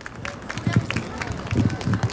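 Scattered applause from a small audience: many quick, irregular claps.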